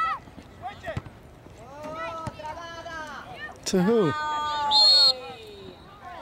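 Players and spectators shouting long calls across an outdoor soccer field, the loudest about four seconds in. Near five seconds a short, shrill whistle blast sounds, typical of a referee's whistle.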